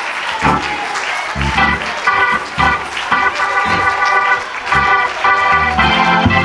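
Organ playing held chords with low bass notes sounding under them at irregular intervals.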